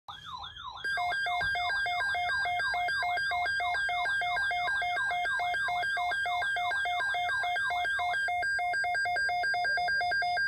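Midland NOAA weather radio sounding its alert for a severe thunderstorm watch: a fast electronic beeping that alternates between two pitches, about three times a second, with a repeating falling siren-like sweep over it. The sweep stops about eight seconds in and the two-tone beeping goes on alone.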